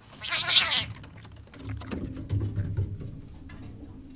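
Trail-camera audio of a sharp, high-pitched animal chittering cry, lasting under a second, as a raccoon snatches a fish from a river otter. The otter gives the fish up without a fight.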